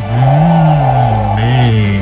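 A man's long drawn-out 'mmm' hum of hesitation, rising in pitch and then falling, with background music under it. A short word follows near the end.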